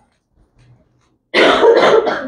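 A man coughing once, loud and close, about a second in after a moment of near silence.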